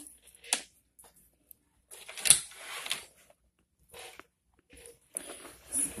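Quiet rustling and handling noises with a few clicks, the loudest a short scratchy noise about two seconds in.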